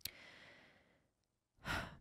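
A woman breathing at a close microphone: a small mouth click, a soft sigh-like exhale that fades within the first second, then a quick, louder in-breath near the end.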